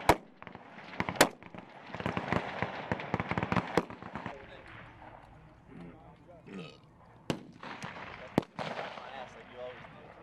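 Rifle shots from a firing line of many shooters: sharp cracks at irregular intervals, thickest between about two and four seconds in, then single shots near the seven- and eight-second marks, with voices in between.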